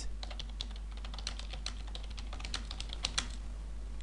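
Typing on a computer keyboard: a quick, irregular run of keystroke clicks as a word is typed out, over a steady low hum.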